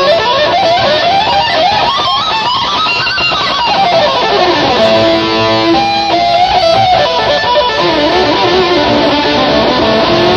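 Live rock band playing an instrumental passage without singing. A lead melody line climbs in pitch over the first three seconds, runs back down, holds a sustained note in the middle, then wavers over the full band.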